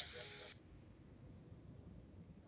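Near silence: a faint trailing end of a voice fades out in the first half second, then only low room tone.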